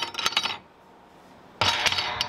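Metal gate latch clicking and rattling as a steel tube farm gate is worked. About a second and a half in, the gate swings shut and clangs into the latch, and the metal rings on briefly.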